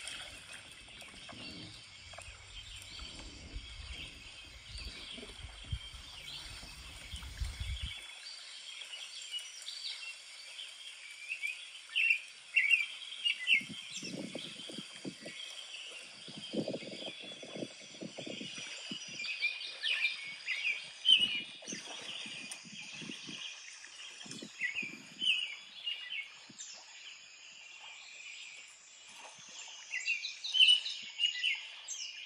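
Small birds chirping and calling in quick, short high notes throughout. A series of short, low, dull sounds comes in the middle.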